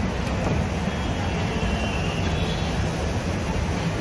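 Steady low rumble of a tour bus and surrounding city traffic, heard from the bus's open upper deck, with faint voices in the background.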